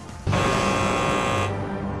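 Game-show wrong-answer buzzer: a loud harsh buzz that starts abruptly about a quarter second in, holds for just over a second, then fades. It marks a strike for an answer that is rejected.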